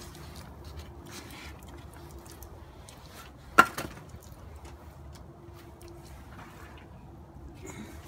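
One sharp knock about three and a half seconds in, over a faint steady hum and low rumble.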